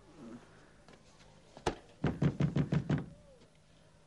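Knocking on a door: one sharp knock, then a fast run of about eight hammering knocks within a second, someone demanding to be let in.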